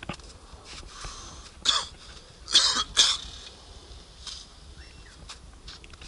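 A person coughing: three short, harsh coughs about two to three seconds in, the last two close together.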